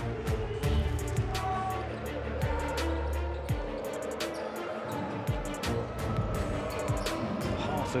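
Background music over basketball game sound, with a ball bouncing on a hardwood court.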